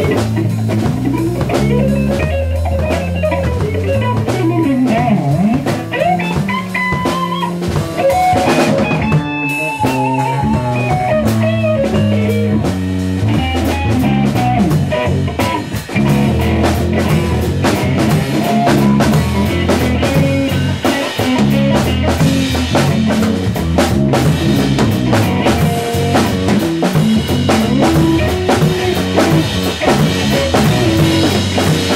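Live band jam with electric guitars and a drum kit. Guitar lines with bent notes lead in the first part, then a busy drum beat takes over alongside the guitars.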